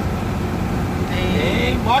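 Cab interior of a loaded Mercedes-Benz truck driving in heavy rain: steady diesel engine drone mixed with tyre and road noise from the wet highway.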